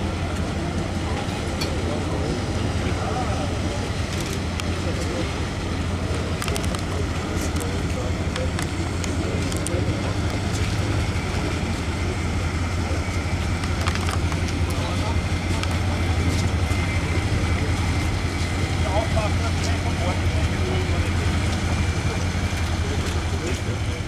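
Engine of a grey military patrol boat running steadily at close range, a low hum, with people's voices talking over it.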